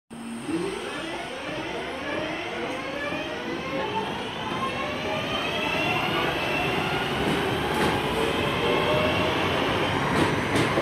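A Class 323 electric multiple unit pulling away from a station platform. Its traction motors whine in many tones that climb steadily in pitch as it gathers speed, growing gradually louder.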